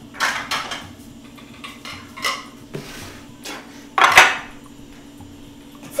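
Ceramic plates clattering as two are taken from a kitchen cupboard and set down on a stone countertop: several separate clinks, the loudest about four seconds in.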